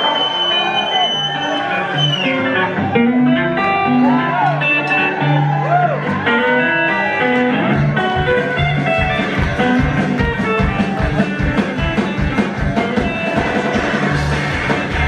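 Live rockabilly band: a hollow-body electric guitar plays a lead with bent notes over upright bass. About halfway through, a steady driving beat comes in underneath.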